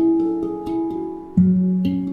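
Steel handpan played with the fingertips: a run of struck notes, each ringing on after the stroke, with a deep low note struck about one and a half seconds in.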